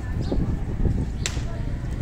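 Outdoor ambience with a steady low rumble and faint voices, cut by one sharp swish or click about a second in.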